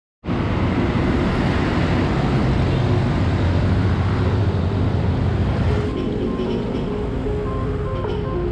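Loud road traffic rumble from passing cars and motorcycles. About six seconds in, music with held synth notes comes in over the traffic.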